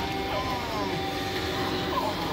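A film's soundtrack playing from a television's speakers and picked up in the room: a held mid-pitched tone with a few sliding tones above it, over a steady low background.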